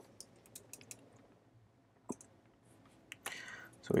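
Computer keyboard being typed: a quick run of light key clicks over the first couple of seconds, with one sharper click about two seconds in.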